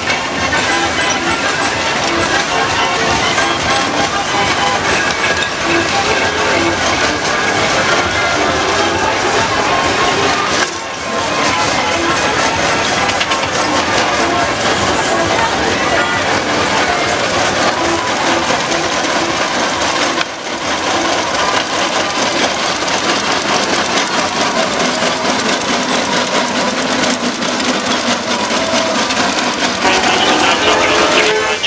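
Music with a voice in it, steady and fairly loud, dipping briefly about eleven and twenty seconds in.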